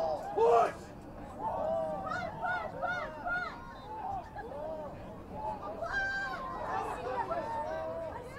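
Several voices shouting and calling out over one another around a rugby ruck, with a loud yell about half a second in.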